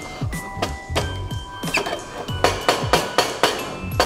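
Background music with a beat, over repeated thuds of a muddler crushing fruit and sugar in a metal shaker tin.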